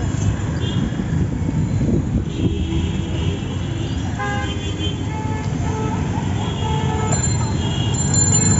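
Dense city street traffic heard from a cycle rickshaw in the thick of it: a steady rumble of vehicles, with a horn honking about four seconds in and shorter toots and voices mixed in.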